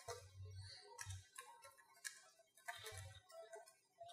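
Faint computer keyboard typing: keystrokes clicking in short irregular runs.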